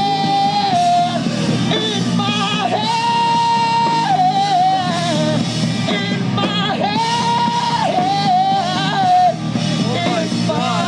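A young rock band playing live, with a singer holding long high notes several times over guitars and drums.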